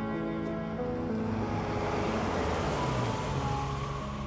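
Background music with sustained notes, and an SUV driving up and pulling in alongside: its tyre and engine noise swells over about two seconds and fades as it stops.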